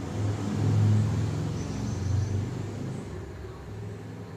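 Low, engine-like rumble that swells about a second in and then slowly fades.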